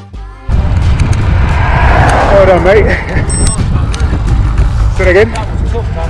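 Heavy wind rumble buffeting the camera's microphone as a road bike is ridden along, starting just after backing music cuts off. Short bits of voice break through about two and a half and five seconds in.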